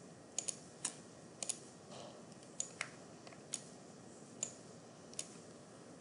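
Faint computer mouse clicks, about ten at uneven intervals, some in quick pairs, as line segments are picked and deleted in a drawing program.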